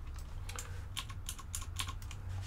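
Typing on a computer keyboard: a run of light, irregular key clicks, several a second, over a steady low hum.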